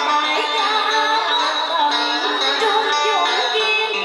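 A woman singing through a handheld microphone over amplified backing music.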